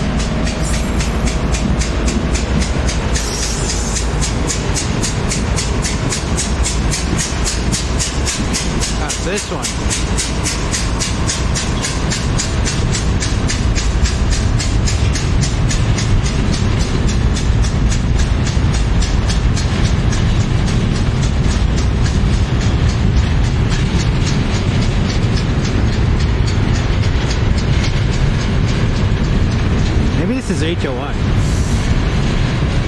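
Freight train passing close by: diesel locomotives working under load, then the steady rumble, rattle and rhythmic clicking of double-stacked container well cars rolling over the rails, growing a little louder after the middle. Among the passing locomotives is BNSF 3675, which is reported to be knocking from an engine problem.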